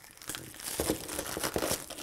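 Clear plastic packaging crinkling as it is handled and pulled off a hanger, with a few small sharp clicks.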